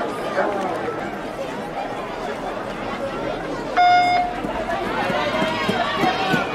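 A start-signal beep sounds about four seconds in, a single steady tone lasting about half a second, over a background of crowd chatter. It sets off a heat of a 200 m inline speed-skating sprint.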